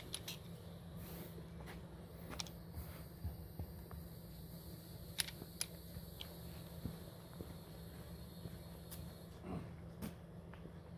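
Faint scattered clicks and scuffs of footsteps on a leaf-strewn dirt path, over a quiet, steady low hum.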